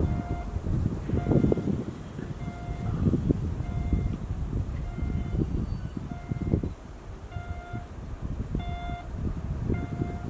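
209 series electric multiple-unit cars, pushed by a Kumoya 143 service car, rolling slowly over yard track: a low, uneven rumble with a few heavier swells. A short electronic beep-like tone repeats about once a second over it.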